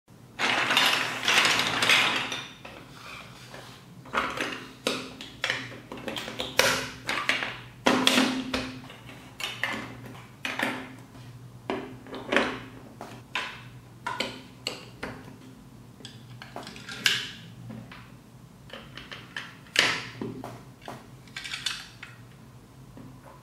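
Large plastic building blocks clattering together for about two seconds, then a long run of separate sharp clicks and knocks as blocks, pegs and gears are pressed and snapped together by hand.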